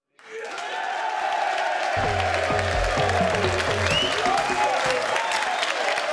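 Studio audience applauding and cheering, starting suddenly, with a bass-heavy music sting from about two seconds in to about five seconds in.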